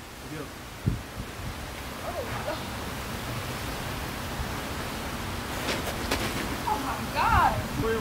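Steady rushing outdoor background noise that slowly grows louder. Brief wordless voice sounds come about two seconds in and again, loudest, near the end, with a few sharp clicks shortly before.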